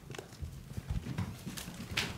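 Several people's footsteps and shuffling on a wooden floor, irregular low thumps, with a sharp knock near the end.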